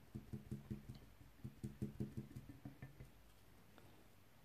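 Wet flat sponge dabbing a freshly painted metal number plate: a quick run of faint soft taps, about five a second, that stops about three seconds in.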